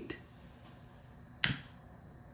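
A single sharp click about one and a half seconds in, from a long-nosed utility lighter's igniter sparking the flame, over faint room tone.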